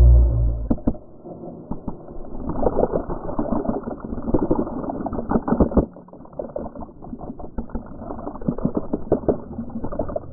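Ice water from a Gatorade cooler pouring onto a body-worn camera: a deep rumble that stops within the first second, then a rush of water with many small knocks of ice. The pour is heaviest from about two and a half to six seconds in and again about eight to nine seconds in.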